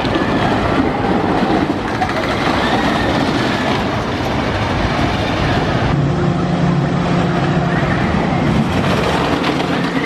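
Great Coasters International wooden roller coaster train running over its wooden track, a steady noise without breaks, with people's voices mixed in. About six seconds in, a steady low hum joins.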